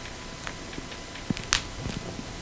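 Pressure flaking a notch into a stone point with a bone tool: a few light ticks, then a sharp snap about one and a half seconds in. The snap is the sound of a small flake dislodging from the edge.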